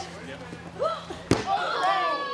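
A single hard slam, about a second and a half in, of a wrestler's body crashing down onto the floor outside the ring. Right after it comes a drawn-out vocal reaction that slides down in pitch.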